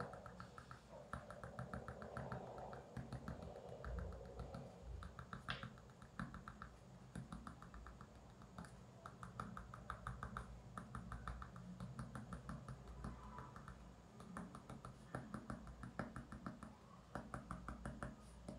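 Coloured pencil scratching on paper in short, quick strokes as small circles and dots are drawn, giving faint runs of rapid ticks.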